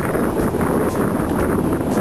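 Wind buffeting the microphone of a camera riding along on a moving bicycle: a steady, loud rushing noise.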